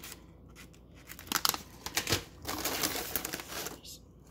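Snack packaging crinkling and rustling as packaged snacks are handled and lifted out of a box, in a run of short bursts starting about a second in.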